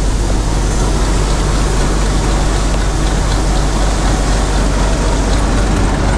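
Bizon combine harvester's diesel engine running steadily under load, with the threshing and unloading machinery going, a constant low drone.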